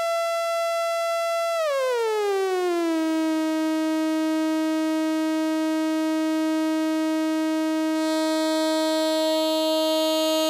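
Hexinverter Mindphaser complex oscillator sounding a steady drone tone rich in overtones. About a second and a half in, its pitch glides down about an octave over roughly a second and a half, then holds steady; near the end a thin hiss of high overtones comes in.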